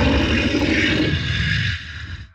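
A deep, rough growl of a snarling beast, a sound effect, fading away near the end.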